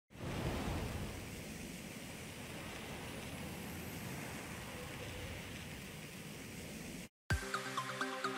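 A steady rushing noise, like wind or surf, swells in over the first second and holds for about seven seconds, then cuts off suddenly. After a brief silence, electronic music with a regular beat starts near the end.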